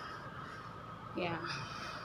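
A short spoken "yeah" about a second in, over a faint, steady outdoor background hum.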